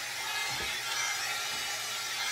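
Hot air brush running steadily on its high setting, an even rush of blown air.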